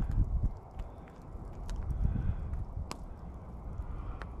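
Campfire embers burning down, with sparse, sharp crackles and one louder pop about three seconds in, over a low rumble.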